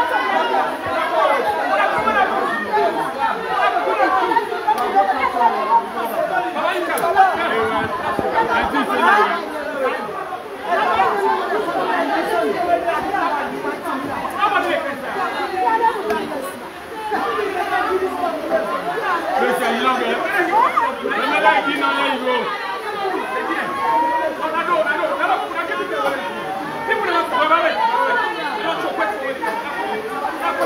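Crowd chatter: many people talking over one another at once in a packed room, steady throughout.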